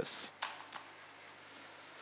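A few faint keystrokes on a computer keyboard in the first second, then only faint room noise.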